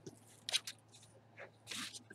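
A few short, faint rustles and scratches on the craft desk: a quick pair about half a second in and a longer rustle near the end.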